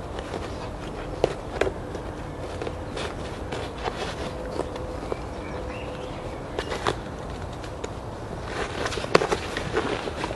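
Camouflage nylon pouches and webbing being handled: fabric rustling and small scattered clicks as a bungee cord is worked through the pouch loops, getting busier near the end.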